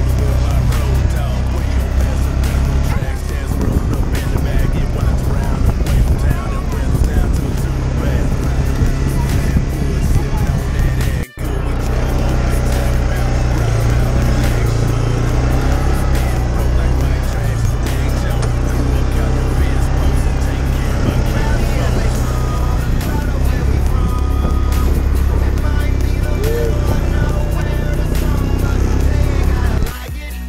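Yamaha side-by-side UTV driving a dirt road: a steady engine drone with rough road and tyre noise. The sound cuts out briefly about eleven seconds in.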